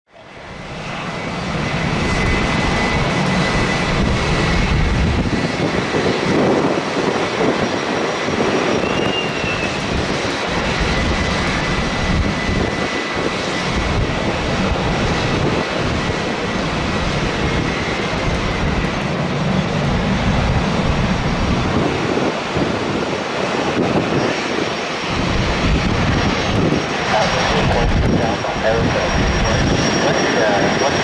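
Boeing 737-800 airliner on final approach, its CFM56-7B turbofan engines making a steady jet noise with a thin high whine. The noise fades in over the first second or two, and a higher whine strengthens near the end as the aircraft draws closer.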